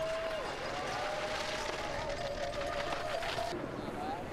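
Steady rushing hiss of downhill racing skis running fast over hard-packed snow, with a faint held tone in the background that fades out about three and a half seconds in.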